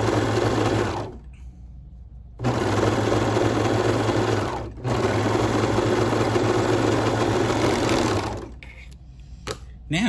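Two-needle serger (overlock machine) stitching an overlock seam while its blade trims the fabric edge, running in three stretches: it stops about a second in, starts again after a short pause, breaks briefly near the middle, then runs on until shortly before the end. A few light clicks follow.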